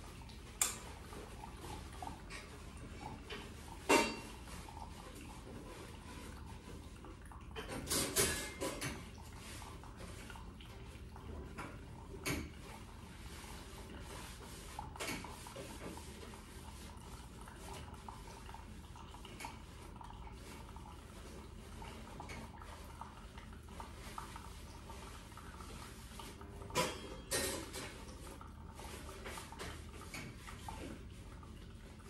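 Scattered sharp knocks and light clatters of objects being handled, spread irregularly over a steady low room hum. The loudest comes about four seconds in, with small clusters around eight seconds in and near the end.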